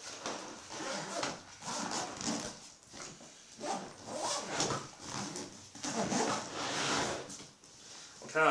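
Camouflage fabric paintball gear bag being handled and closed: a run of irregular rustling and scraping strokes as the nylon body and moulded plastic lid are pulled over and pressed down.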